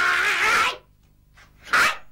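A woman's loud, high-pitched vocal cry, a drawn-out shriek that cuts off before a second in. A short second vocal burst follows near the end.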